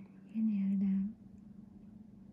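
A person's voice: one short hummed sound, under a second long, in the first half. A faint steady hum runs underneath.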